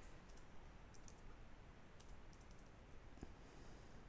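Faint computer keyboard keystrokes: a few scattered, irregular clicks over a low room hiss as a command is typed and backspaced.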